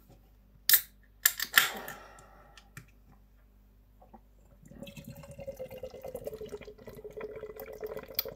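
A beer can opened with a sharp crack and a short hiss about a second in, then, from about five seconds in, imperial stout poured from the can into a glass in a steady stream.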